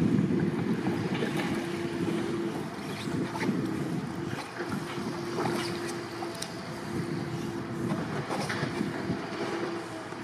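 Water sloshing and splashing around a surfski and its paddle blade, with small scattered splashes, over wind on the microphone. A faint steady hum comes and goes in the background.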